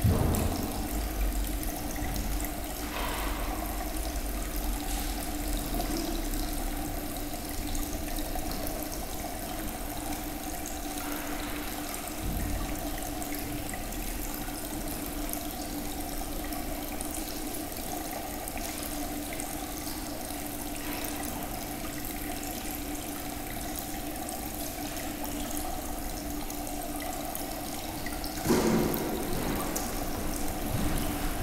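Steady background hiss with a low hum, broken by a few faint short noises and one louder brief noise near the end.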